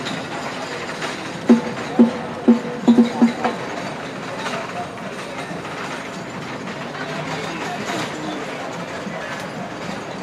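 A quick rhythmic run of about seven pitched percussion strikes, about a second and a half in, over a steady murmur of outdoor crowd and field noise that carries on alone after about three and a half seconds.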